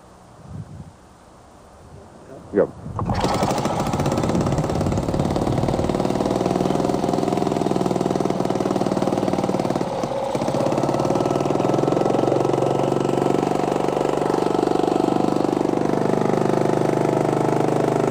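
Small engine running on a GEET fuel processor being started: it catches about three seconds in and then runs steadily and loudly. Its speed dips briefly near the middle and shifts in the second half as the processor's valve is adjusted.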